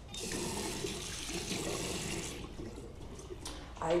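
Water running from a tap into a washbasin, stopping a little over two seconds in.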